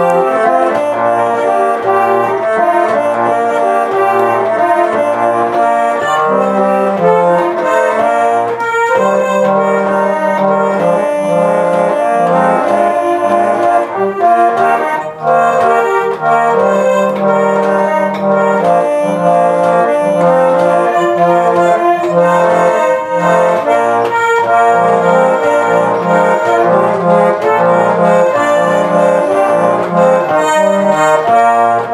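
Hand-cranked German three-monkey automaton playing its tune on a built-in mechanical organ: reedy, brass-like sustained notes carrying a melody over a bass line that steps about twice a second.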